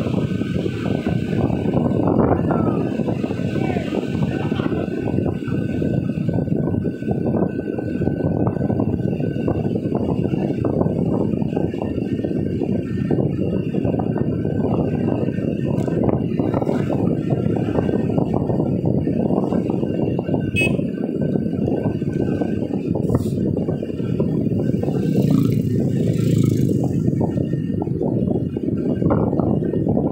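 Steady road and wind noise of a car driving, heard from inside the cabin: a continuous low rumble of tyres and engine with no change in pace.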